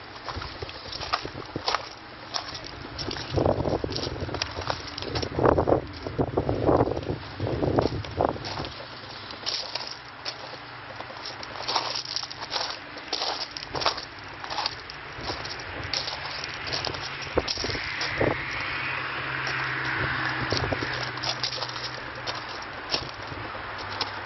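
Footsteps crunching on gravel with irregular clicks and knocks of the camera being handled, busiest in the first third, over a faint steady low hum.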